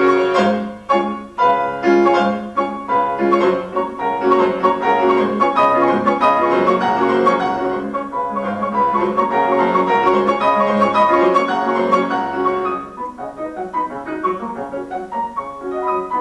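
Solo grand piano playing a fast classical passage, with rapid runs of notes, growing somewhat softer near the end.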